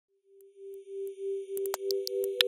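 Electronic logo-intro sound: a steady low tone fading in and swelling, with a second slightly higher tone joining about a second and a half in. Short ticks over it come faster and faster.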